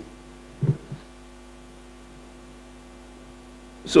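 Steady electrical mains hum from the lectern microphone and sound system, a constant low buzz of several fixed tones, with a short low sound about two-thirds of a second in. A man's voice returns right at the end.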